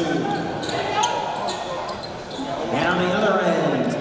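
Basketball dribbled on a hardwood court during a game, bouncing about twice a second, with shouting voices echoing in a large gym.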